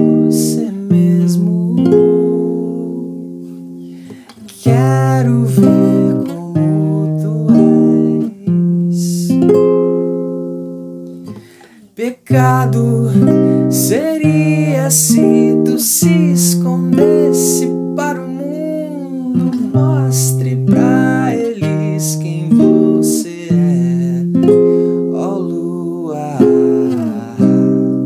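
Nylon-string classical guitar playing the passage's chord cycle of C minor, E-flat major and F minor: for each chord a bass note is plucked and then the remaining strings are struck, the chord changing every second or two. A voice sings along over parts of it.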